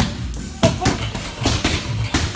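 Boxing gloves landing punches, about six sharp smacks in quick two- and three-punch combinations, with music playing underneath.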